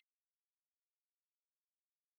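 Complete silence: the sound track is muted, cutting off abruptly at the start.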